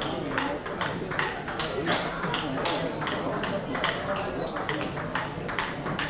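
Table tennis ball clicking off the rackets and the table in quick succession during a rally, several sharp hits a second, in a hall with voices murmuring behind.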